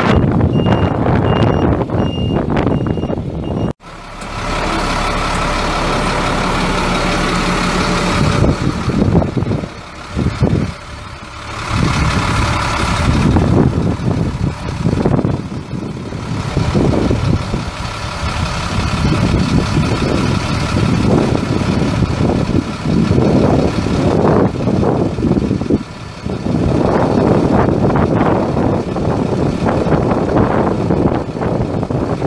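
Backup alarm beeping at an even pace over a diesel truck's engine, cutting off abruptly a few seconds in. Then the truck's Caterpillar 7.2-litre six-cylinder turbo diesel runs, its sound rising and falling.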